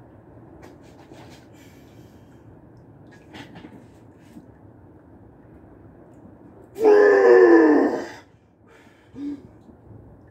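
A man's loud straining yell from the effort of pressing a heavy barbell on the bench press. It comes about seven seconds in, lasts about a second and a half, and falls in pitch. Before it there are only a few faint clicks.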